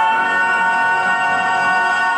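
A male singer holds one long, steady note in an operatic style over the song's backing music.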